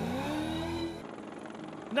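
Rally car engine revving up, its pitch rising for about a second, then cut off abruptly. A faint background remains until speech begins.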